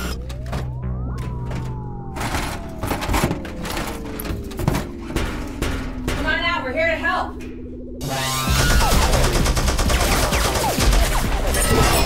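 Sci-fi film soundtrack: a low droning score with a long electronic sweep that rises and then slowly falls, and a warbling electronic effect about six seconds in. From about eight seconds in, a dense, loud barrage of rapid gunfire effects starts over the music.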